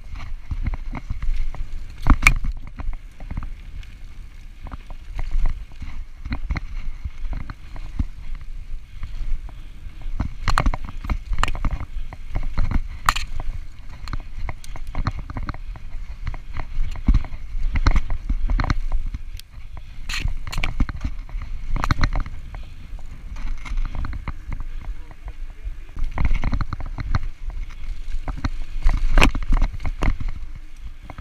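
Mountain bike rolling over a bumpy dirt trail: steady low tyre and wind rumble on the camera, broken by frequent sharp knocks and rattles from the bike as it hits bumps.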